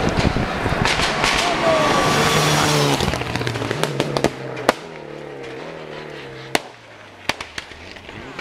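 Rally car passing at speed, its engine loud for about three seconds, then fading as it pulls away up the stage. Several sharp bangs from the exhaust punctuate the fading engine.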